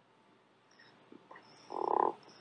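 Near silence, then a brief low muffled sound near the end.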